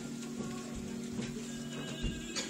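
Sharp clicks of high-heeled footsteps on a hard floor, several steps a fraction of a second apart, over background music with long held notes.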